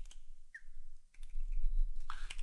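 Computer keyboard keystrokes: a couple of isolated key clicks at first, then several quick clicks in the second half as lines of code are entered and pasted.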